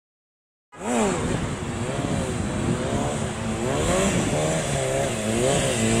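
Kawasaki 636 sport bike's inline-four engine revving up and down over and over as the rider works the throttle to hold a wheelie. It starts about a second in.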